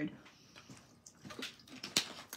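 A person drinking: faint sips and swallows, then a sharp click near the end.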